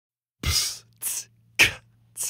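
Opening beat of a rock song: after a short silence, sharp noisy percussive hits come about twice a second, every other one with a deep low thump, over a faint low hum.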